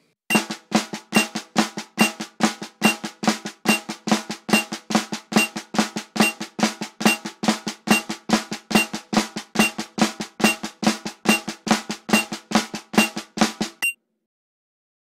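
Snare drum played with two sticks: the inverted flam tap rudiment, an inverted paradiddle sticking with a flam every two beats. It runs at an even, moderate tempo of about four strokes a second with regular accents.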